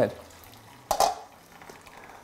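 Washing up at a kitchen sink: a tap running quietly and a single clink of glassware or crockery about a second in.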